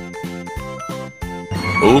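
Light background music: evenly spaced pitched notes, about three a second. Near the end a narrator's voice cuts in over it announcing 'uma hora depois' ('one hour later').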